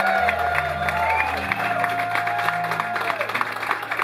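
A live band's electric guitars and bass holding sustained notes, with a guitar bending notes over them, while an audience applauds. The low bass note stops about a second and a half in, and the higher held tone fades out near the end.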